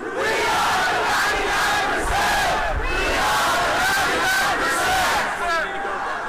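A large crowd of protesters shouting together, many voices at once. The shout starts suddenly and dies back down a little before the end.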